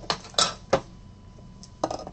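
Hard plastic clicks from a clear 130-point one-touch card holder being handled and opened to take a sleeved trading card: four short, sharp clicks, three close together early and one near the end.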